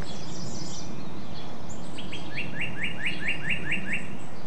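Songbird calling over a steady low background rumble: high twittering at first, then, from about halfway, a quick run of about eight repeated down-sliding chirps, about four a second.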